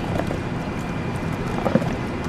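A long wooden paddle stirring a thick, wet oatmeal mix in a plastic kiddie pool: scattered wet squelches and scrapes, with a sharp knock near the end.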